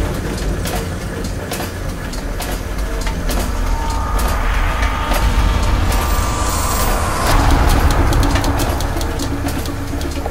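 Mechanical sound effects of turning gears and machinery: a heavy low rumble under fast, dense clicking and clanking, swelling louder a little past the middle.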